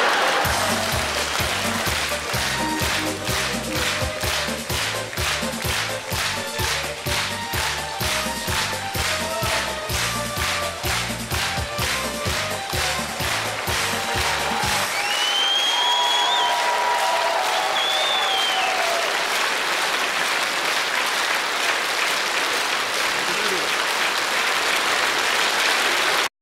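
Studio audience applauding over upbeat stage music with a bass line, the clapping falling into an even beat of about two to three claps a second. About fifteen seconds in the bass drops out and steady applause carries on, with a few brief high-pitched calls.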